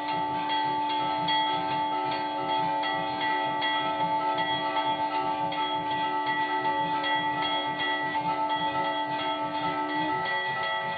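Hanging temple bell rung over and over during aarti, with a few strokes a second, over a long unbroken held note and a rhythmic low pulse.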